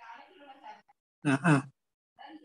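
A person's voice over an online-class call: indistinct talk, then a loud two-syllable call about a second and a quarter in.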